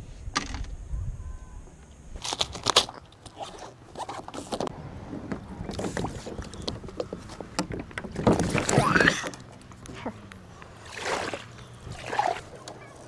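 A plastic Pelican kayak being paddled: irregular paddle strokes and water swishing, with knocks and scrapes against the hull, a cluster of sharp knocks about two seconds in and a louder swish of water near the middle.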